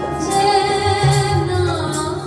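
Sikh kirtan: a woman sings a line of Gurbani with held notes over harmoniums and tabla, the tabla's deep bass strokes sounding around the middle.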